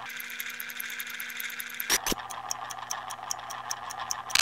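Electronic transition sound effect: a steady synthetic hum under a fast run of high ticks. A brief sweep comes about two seconds in, and after it the hum continues lower in pitch.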